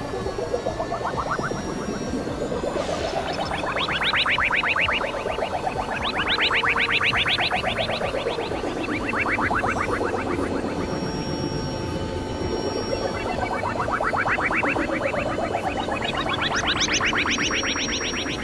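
Experimental electronic music: a fast pulsing synthesized tone sweeps up and down in pitch in repeated arcs every few seconds, over a steady low drone.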